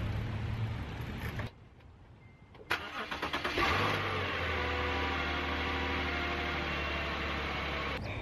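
Subaru Outback's boxer engine cranking for about a second and catching a little under three seconds in, then settling into a steady idle as its revs ease down. It starts cleanly after days of sitting: the battery, kept topped up by a solar trickle charger, has held its charge.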